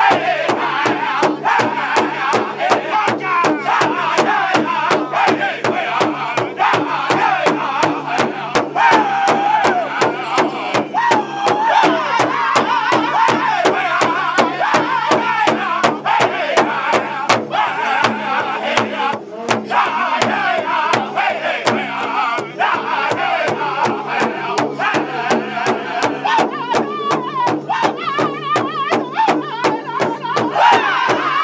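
Powwow drum group singing an intertribal song, several high voices in unison over a steady, even beat struck together on one large drum.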